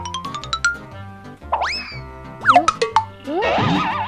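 Playful background music over a steady bass beat: a quick rising run of notes, then springy sliding 'boing' swoops and wobbling glides, like comic sound effects.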